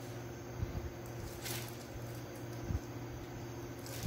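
Faint squishing and rustling of a plastic bag being squeezed as soft polvilho dough is piped onto a metal baking tray, over a steady low hum.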